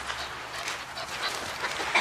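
A puppy's faint whimpering.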